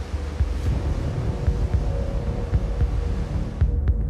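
A low, throbbing music drone with a faint steady hum above it. The hiss above it drops away near the end.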